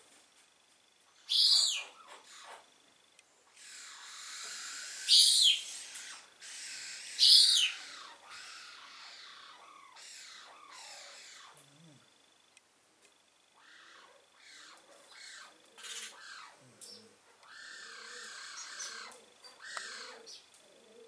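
Bird calls: three loud, sharp, high chirps that fall in pitch, about one, five and seven seconds in, among softer chirps.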